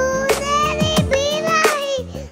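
A young girl singing a Mappila song into a headset microphone, holding and bending long notes over backing music with a regular drum beat.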